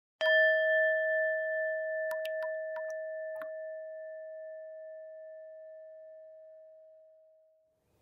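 A bell-like chime struck once, ringing out and slowly fading away over about seven seconds. A few short light clicks sound between about two and three and a half seconds in.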